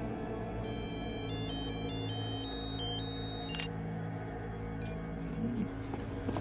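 Low, steady dramatic underscore music. About a second in, a mobile phone gives a short run of high electronic tones stepping between several pitches for a couple of seconds, followed by a click.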